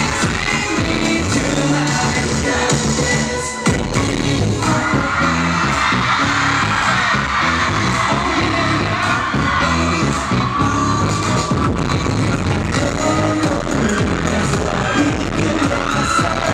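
Live K-pop dance track played loud over a theatre PA, with the group singing into microphones, heard from the audience. The music drops out briefly about three and a half seconds in, then comes straight back.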